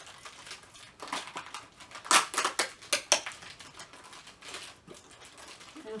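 Foil toy wrappers being crinkled and torn open by hand, a run of irregular crackles, loudest about two to three seconds in.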